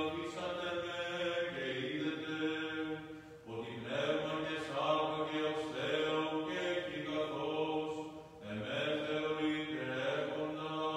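A man chanting solo in the Byzantine style of Greek Orthodox liturgy, holding long notes in phrases, with brief pauses about three seconds in and again about eight seconds in.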